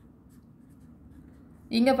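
A pen writing on paper: faint, light scratching strokes as numbers are written. Speech starts near the end.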